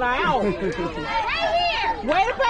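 Several high-pitched voices chattering and calling out at once, overlapping so that no words come through plainly.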